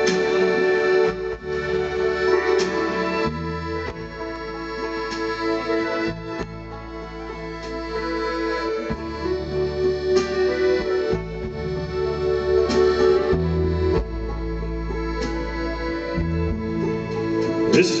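Live band playing the slow instrumental introduction to a ballad: a held chord pulsing gently over bass notes that change every second or two, with the singer's voice coming in at the very end.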